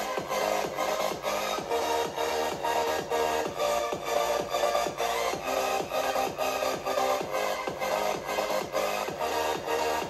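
Electronic dance track played through the AAXA P400 mini projector's small built-in front-firing speakers, turned up to full volume: a steady fast beat with repeated falling bass sweeps, thin in the deep bass.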